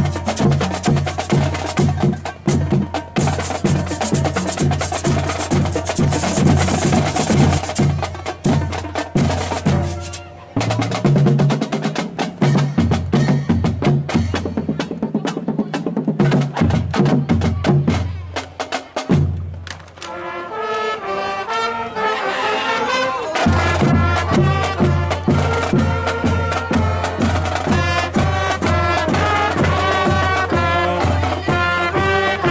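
School marching band's drum section, bass drums and snare drums, playing a steady beat. About twenty seconds in, the brass and saxophones enter with a melody over the drums.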